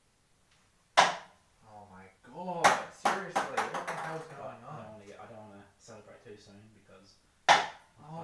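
Ping-pong balls landing with two sharp knocks, one about a second in and one near the end, with smaller clicks and a man's wordless exclaiming voice in between.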